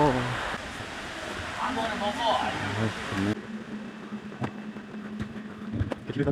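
Steady rush of a creek with faint voices. Near the middle it changes abruptly to a quieter background with a low steady hum and a few sharp clicks.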